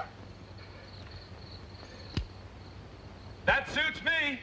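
Gunfire in a shootout: a sharp shot about two seconds in and a louder one about three and a half seconds in. The second is followed at once by a man's wordless cry. Under it all runs the steady hiss and hum of an old film soundtrack.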